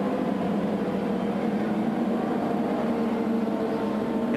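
CART Champ Car turbocharged V8 engines running at reduced caution pace as the field circles under yellow, a steady drone that holds one pitch.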